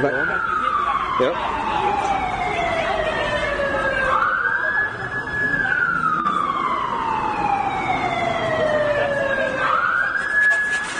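Wailing siren whose pitch rises quickly, holds briefly, then falls slowly. The cycle repeats about every four and a half seconds, with voices underneath.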